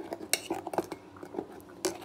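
Metal spoon stirring thick custard in a steel pot, clinking and scraping against the pot in a run of irregular light knocks, the sharpest just before the end.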